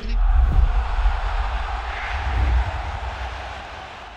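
Logo sting for the end card: a deep bass boom hits suddenly, with a rushing whoosh over it that swells about halfway through, and the whole sound fades steadily over the next few seconds.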